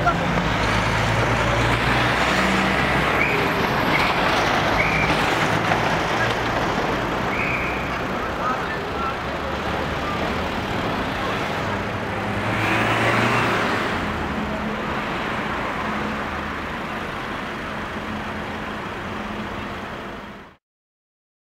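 Road traffic noise with vehicle engines running, rising and falling as a vehicle passes about thirteen seconds in, with faint voices.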